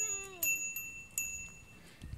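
Child's bicycle bell rung three times in about a second, each ding ringing on briefly with a high, clear tone. A short falling call sounds under the first ding.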